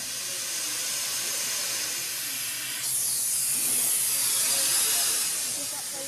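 Automatic power drill running as it drills a hole through the carbon-fibre wing skin: a steady hissing whir that turns higher and a little louder about three seconds in.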